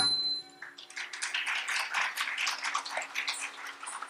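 A last percussion stroke of the Carnatic accompaniment rings out, then an audience applauds with dense, uneven clapping for about three seconds over a faint steady drone.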